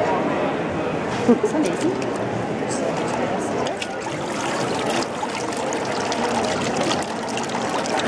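Water trickling and dripping as a wooden papermaking mould and deckle is lifted out of a vat of paper pulp and drains, over the steady background chatter of a busy hall and a short laugh.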